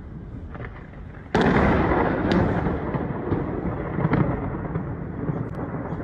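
Thunderclap: a sudden loud crack about a second in, then a long rolling rumble with a few sharper crackles, slowly dying down.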